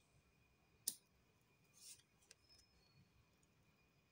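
Tarot cards being handled at the table: one sharp click about a second in and a faint papery brush about two seconds in, with near silence otherwise.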